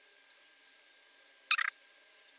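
Marker tip squeaking on paper once, about one and a half seconds in, as a quick cluster of three short high squeaks; otherwise near silence.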